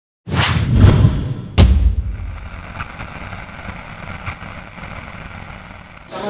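Logo intro sting of whooshes and booming hits: a rushing whoosh with a deep boom starts about a third of a second in, and a second sharp hit comes at about a second and a half. After that a long tail slowly fades.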